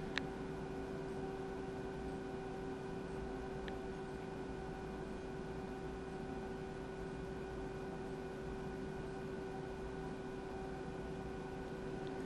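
A steady electrical hum with a few overtones, unchanging throughout, from the amplifier test bench during a dummy-load power run, with a single short click right at the start.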